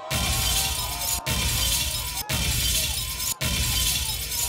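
A noisy, crackling sound effect in the DJ mix between tracks: a bright, shattering hiss with faint gliding tones under it, cut off briefly three times, about once a second.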